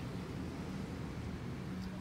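Steady low background hum with no distinct events.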